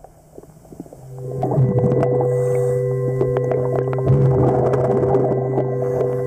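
Underwater recording of a steady, many-toned machine hum that swells in about a second in and then holds, with frequent sharp clicks and crackles over it.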